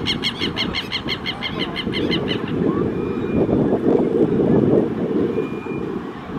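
Low rumble of the Airbus A330-900neo's Rolls-Royce Trent 7000 jet engines as the airliner rolls out after landing. Over it, a bird calls in a rapid, even series of about six or seven notes a second, which stops about two seconds in.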